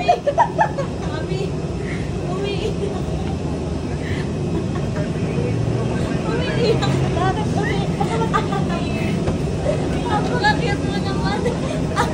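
Indistinct chatter of people walking through an airport jet bridge over a steady low rumble.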